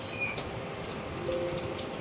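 ATM buttons being pressed: a short high electronic beep just after the start, then a few light clicks. A held low two-note tone sounds in the second half over a steady background hum.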